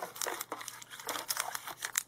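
Foil booster pack wrappers crinkling lightly as packs are handled and picked from the booster box, a run of faint irregular crinkles.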